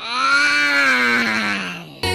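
One long, drawn-out sung note from a cartoon woman's voice, slowed down and lowered in pitch so it comes out like a groan. Its pitch rises a little and then sags downward as it fades near the end.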